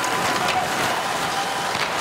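Steady crowd noise of an ice hockey arena during live play, with faint clicks and scrapes from skates and sticks on the ice.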